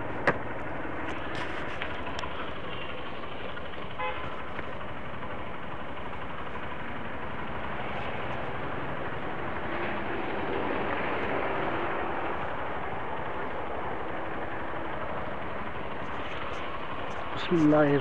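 Motorcycle riding through city traffic: a steady rush of wind and road noise with the engine running, and a brief horn toot about four seconds in.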